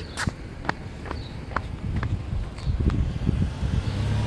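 Footsteps on a street crossing, about two a second, over a low rumble of city traffic.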